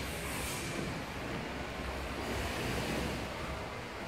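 Steady low rumble and hiss of wind on the microphone, with no distinct events.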